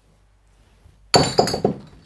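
Glass striking and breaking: a sudden cluster of about four sharp clinking hits just after a second in, with a high ringing that dies away.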